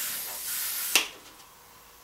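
Double-action gravity-feed airbrush spraying, a high air-and-paint hiss that fades away over the first second, then a single sharp click about a second in.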